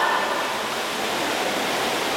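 Steady wash of splashing water from swimmers racing, carrying the echo of an indoor pool hall.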